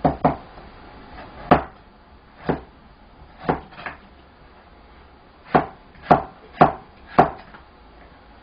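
Chinese cleaver slicing a carrot on a cutting board: about ten separate chops at uneven spacing, the blade knocking on the board with each cut, and four quicker chops in the second half.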